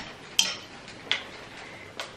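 Two sharp clicks, a little under half a second apart, of a plastic clothes hanger knocking against the rail of a clothes rack as a dress on its hanger is taken off.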